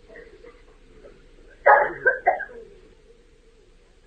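A short, loud vocal sound from a person, like a cough or throat clearing, about a second and a half in. It sits over the faint steady hiss and hum of the old recording.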